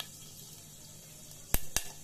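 Whole spices for a tadka (cumin and fenugreek seeds with a dried red chilli, clove and cinnamon) sizzling faintly in hot oil, with two sharp pops close together about a second and a half in as the seeds crackle.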